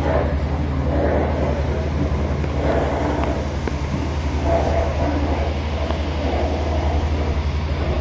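A steady low hum with a fast, even flutter, like a running electric fan close by, with faint voices murmuring in the room.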